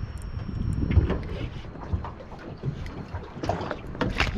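Wind buffeting the microphone over a low rumble aboard a small boat, with irregular knocks and short clicks as a spinning rod and reel are worked against a hooked fish; the heaviest thump comes about a second in.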